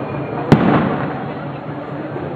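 A single loud firework bang about half a second in, its echo dying away over the following second.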